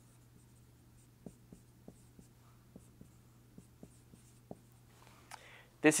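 Dry-erase marker writing on a whiteboard: about ten light taps and short strokes as the marker touches and lifts off the board, between one and four and a half seconds in.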